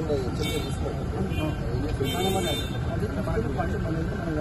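Several men's voices talking together in a group, over a steady low background rumble.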